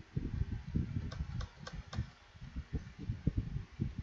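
Computer keyboard being typed on: a quick run of dull key knocks, with four sharper clicks about a second in.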